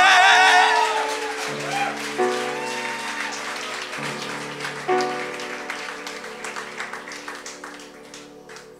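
The end of a live song: a singer's long final note with wide vibrato cuts off about a second in, while piano chords are struck a few more times and fade away. Audience applause builds underneath as the music dies down.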